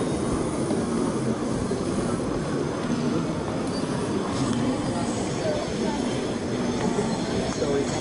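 Steady crowd noise of a busy exhibition hall: many voices blended into a constant rumble, with no single event standing out.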